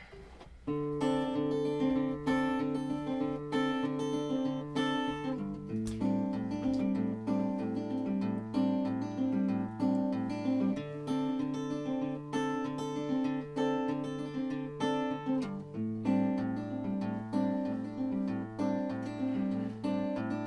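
Acoustic guitar strumming a steady chord pattern with a lap-played resonator guitar, the instrumental intro of a slow Americana song. It starts about a second in, and the chords change about every five seconds.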